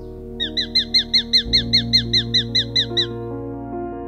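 Sharp-shinned hawk calling: a rapid series of about sixteen short, high, sharp notes, about six a second, each falling slightly in pitch. Steady background music plays underneath.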